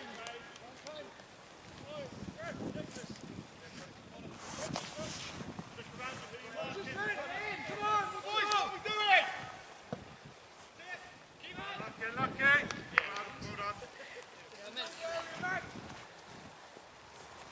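Footballers shouting and calling to each other across the pitch during play: several voices, distant and unclear, loudest a little past halfway and again near three-quarters of the way through. Two short sharp knocks stand out among the voices.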